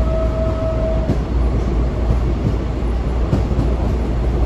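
Washington Metro railcar heard from inside the cabin while running: a steady low rumble of the car in motion, with a steady whine that cuts off about a second in, and a few faint clicks after it.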